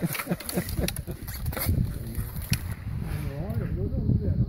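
Indistinct voices of several people talking, with a few sharp clicks scattered among them over a low steady rumble.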